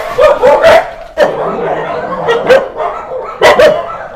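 Dogs barking, short sharp barks in quick succession, with a longer drawn-out call between about one and two seconds in.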